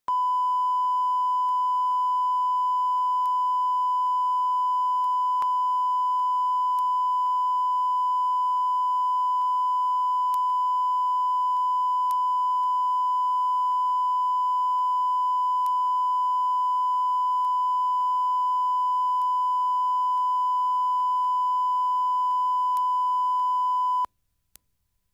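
Line-up reference tone recorded with SMPTE colour bars at the head of a broadcast videotape: one steady, unbroken beep at a single pitch.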